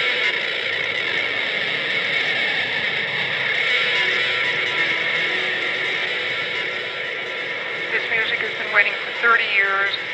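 Instrumental rock recording played by two electric guitars: a dense, steady wash of guitar sound with held tones. About eight seconds in it is joined by short, quickly sliding pitched phrases.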